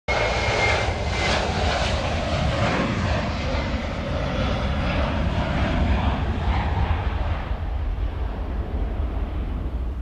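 Jet aircraft engines running at high power: a loud, steady rumble with a hiss on top and a thin high whine in the first second or so. The hiss fades over the last couple of seconds, and the sound cuts off abruptly at the end.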